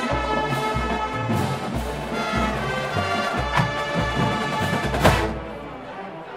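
Marching band playing a sustained brass chord over low drum beats, with a loud hit about five seconds in, after which the music thins out.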